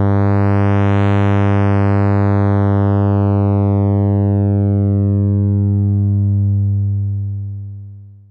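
A 100 Hz sawtooth buzz through the ADE-20's two-pole low-pass filter with resonance at zero. The cutoff sweeps up to fully open about a second in, then slowly back down, so the tone turns bright and then gradually darker and duller, with no resonant peak. It fades out near the end.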